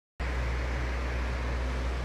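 Steady low hum with an even hiss over it, a constant fan-like room noise that starts suddenly just after the beginning.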